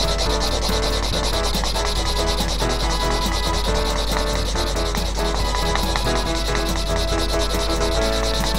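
Tip of a Staedtler triplus permanent marker rubbing and scratching on paper in continuous strokes as lines are drawn, with faint music underneath.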